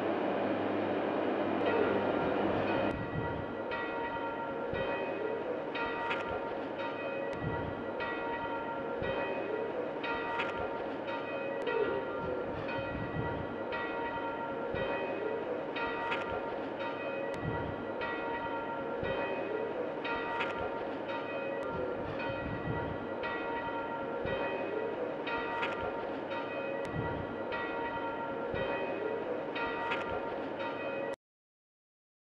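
Bells ringing: a sustained ringing tone with fresh strikes at a slow, regular pace.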